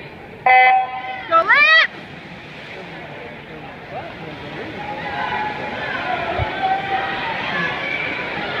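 Electronic starting signal of a swimming race: one loud beep about half a second in, then a brief rising tone, followed by spectators shouting and cheering that grows louder as the race gets under way.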